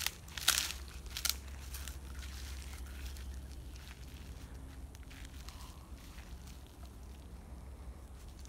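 Footsteps crunching through dry pine needles and dead palm fronds, with several sharp crackles in the first two seconds and fainter rustling after.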